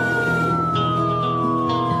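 Song outro music: sustained chords under a single high tone that glides slowly downward in pitch, like a siren winding down.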